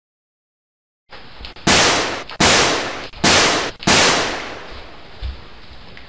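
Four gunshot sound effects edited onto a home video, each a loud sudden bang that dies away over about half a second, spaced less than a second apart. They come over faint room sound that starts after about a second of silence.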